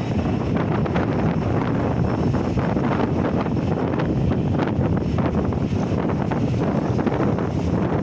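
Wind buffeting the microphone, a steady loud rush.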